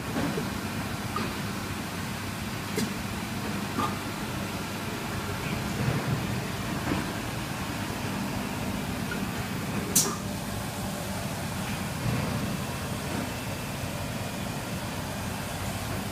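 Steady low hum of workshop machinery, with a few light clicks and one sharp click about ten seconds in.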